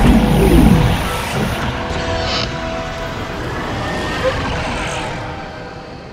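A cartoon character's wailing cry in the first second, over a rumbling sound effect and background music. The sound fades away over the following seconds.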